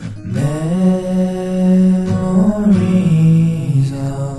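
Male voice singing one long held note over acoustic guitar in a folk song, swelling in just after the start, its pitch wavering slightly in the middle.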